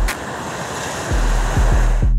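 Steady rush of wind and harbour waves on open water. About a second in, the deep bass and kick-drum beat of background music comes in over it.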